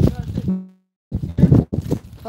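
Indistinct voices with rough noise on the microphone, the audio cutting out to dead silence twice, once for about half a second.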